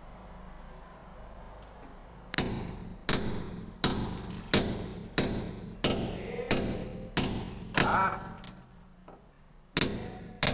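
Hammer striking a steel chisel against a plastered wall: about ten sharp metallic clangs in a steady rhythm, roughly one and a half blows a second, starting about two seconds in, with a short pause before a last blow near the end.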